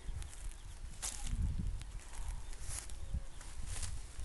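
A Great Dane wading in shallow creek water, with a few soft, brief sloshes over a low, uneven rumble.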